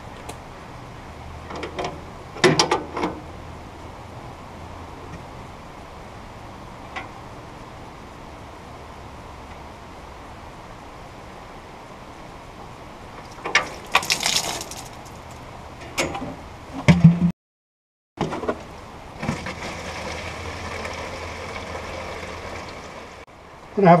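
Knocks and clicks of hands working the valve and hose fitting under a sawmill's blade-lube tank. Near the end, after a short break, the tank's windshield washer fluid runs steadily into a plastic gallon jug.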